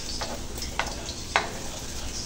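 Ground pork and potato omelette mixture sizzling in shallow oil in a non-stick frying pan, with three light clicks of a metal spoon as more mixture is spooned in.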